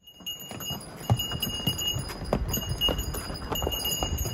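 Donkeys' hooves clip-clopping irregularly on a stone path, with the bells on their harnesses jingling on and off.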